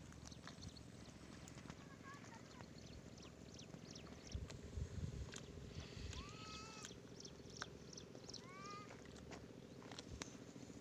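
Faint open-air ambience in which a bird gives a few short arching calls, about six and eight and a half seconds in, among scattered light clicks. A brief wind rumble on the microphone comes about four to five seconds in.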